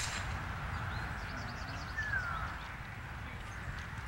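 Outdoor ambience with a steady low rumble and faint high chirping, and a bird's short falling whistle about two seconds in.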